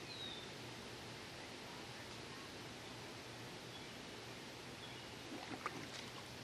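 Faint, steady rush of flowing water from a nearby lowhead dam, with a short bird chirp at the very start and a few light knocks near the end.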